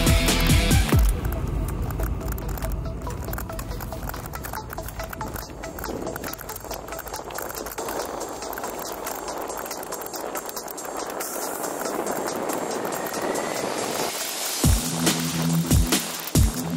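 Background music with a beat stops about a second in. It gives way to the riding noise of a Kona Big Honzo hardtail mountain bike rolling fast over hard-packed dirt singletrack, a continuous rush with dense rattling and clicking. Music with drum hits comes back near the end.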